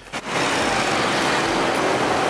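Motorcycle on the move: a steady engine sound with rushing air and road noise. It cuts in suddenly about a quarter of a second in, at a cut from a quiet moment.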